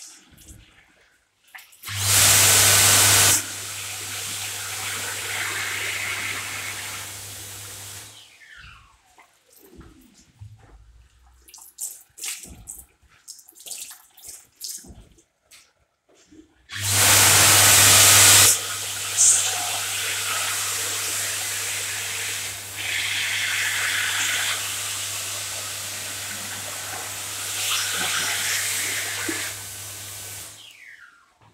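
Sensor-operated tap turning on twice and running into a ceramic sink. Each run opens with a loud rush of about a second and a half, then settles into a steadier flow with a low hum under it. The first run lasts about six seconds; the second starts about halfway through and runs on for some thirteen seconds before shutting off.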